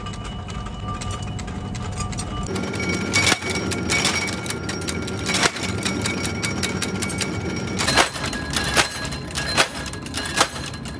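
Heavy mechanical shear working steel bar stock: a steady machine hum with sharp metal clanks, first a few seconds apart, then coming about one a second near the end.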